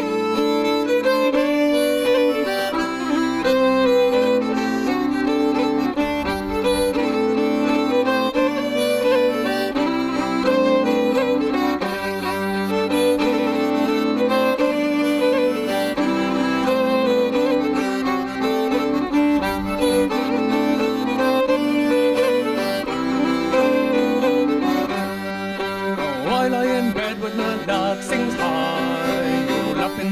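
Fiddle and button accordion (melodeon) playing an instrumental break between sung verses of a folk song: the fiddle carries the tune over the accordion's sustained chords and bass, which change in steady blocks.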